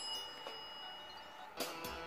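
Music playing quietly through a Kinter MA-700 mini 12V amplifier driving a BMB speaker, during a sound test of the amplifier. A thin steady high tone runs through the first second and a half, and the music grows suddenly louder near the end.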